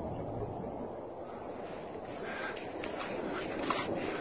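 Wind buffeting a phone microphone outdoors, a steady rushing noise, with a few short scuffing and rustling sounds in the second half.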